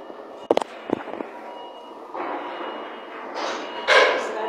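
A quick cluster of sharp knocks about half a second to a second in, followed by rustling noise and another loud burst near the end.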